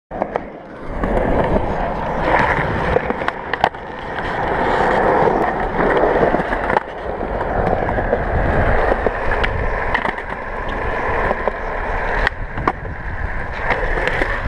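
Skateboard wheels rolling over concrete: a continuous gritty rumble that swells and eases as the board speeds up and slows, broken by a few sharp clicks.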